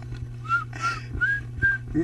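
A person whistling a short run of about five brief notes, the middle ones a little higher, over a steady low hum.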